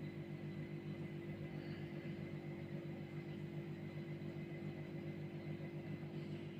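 Steady low electrical hum with a faint hiss and no distinct handling sounds.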